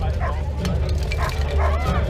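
Sharp knocks of weapons striking armour in an armoured buhurt melee, mixed with short high yelping calls.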